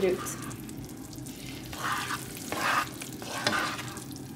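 A spatula stirring thick, creamy mushroom risotto in a frying pan, with a few scraping strokes in the second half, over the sizzle of the rice cooking in the pan.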